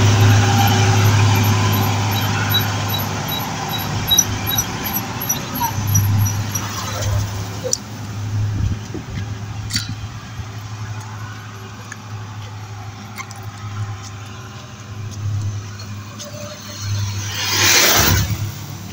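Steady vehicle engine and road noise heard from inside a moving vehicle on a paved road, louder in the first several seconds and with a swell near the end. A regular series of high beeps, about three a second, runs over the first seven seconds.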